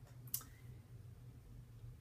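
Quiet room tone with a low steady hum, broken by a single sharp click about a third of a second in.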